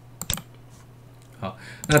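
A few isolated, sharp clicks from a computer keyboard.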